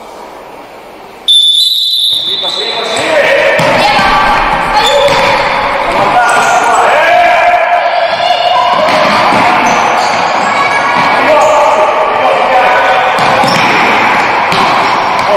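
A referee's whistle sounds once, about a second in, to start play. It is followed by a futsal ball bouncing and being kicked on a wooden sports-hall floor, under steady shouting from players and the crowd, echoing in the hall.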